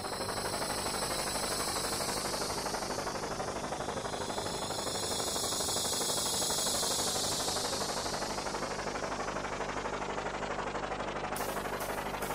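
Helicopter rotors: a steady whirring noise with a fast, even chop, swelling gently and then easing off. A few light ticks come near the end.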